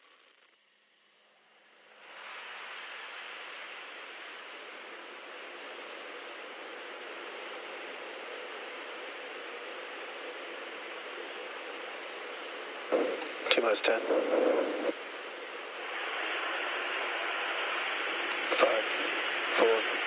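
Steady hiss of an open radio communications loop, starting about two seconds in and stepping up slightly near the end, with a few brief countdown callouts over it during the terminal count to a rocket static fire.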